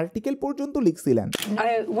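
Speech: a man talking, then, about a second and a half in, a cut to a different voice asking a question in English, with a brief sharp click-like noise at the cut.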